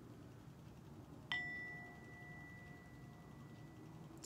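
Small metal singing bowl held on the palm and struck once with a wooden striker about a second in. It rings on with a low and a higher clear tone that slowly fade.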